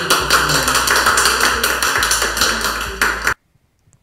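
A small group of people clapping over background music with a steady bass line; it cuts off suddenly a little after three seconds in.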